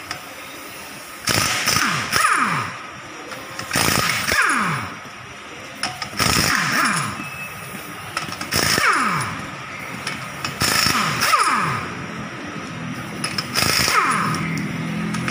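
Power impact wrench run in six short bursts about two seconds apart, its motor winding down in pitch after each one.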